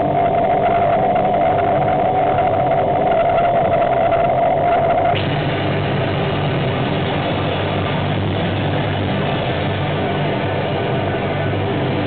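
Live rock band playing an instrumental passage, with distorted electric guitars holding sustained chords over bass and no vocals. A held high note stops abruptly about five seconds in and the guitars ring on.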